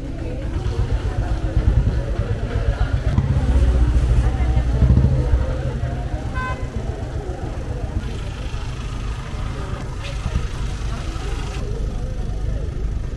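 Low rumble of a motor vehicle's engine, loudest about four to five seconds in, under a crowd's chatter, with one short horn beep about six and a half seconds in.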